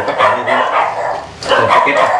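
A dog barking, with men's voices around it.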